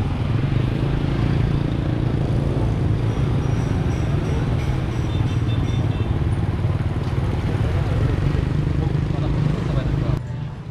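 Street traffic of motorbikes and scooters running past, a steady low engine-and-road rumble, with people's voices mixed in.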